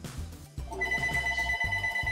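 A telephone ringing with a steady, pulsing electronic ring that starts a little under a second in, over background music with a heavy bass beat.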